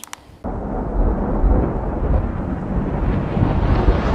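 A loud, deep rumbling noise comes in about half a second in and swells toward the end: a sound effect laid under an animated outro logo.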